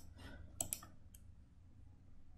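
A few faint clicks from a computer mouse, spread over the first second or so.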